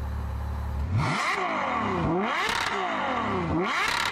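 Ferrari 812 Superfast's V12 idling, then revved three times from about a second in, the pitch climbing and dropping with each blip of the throttle.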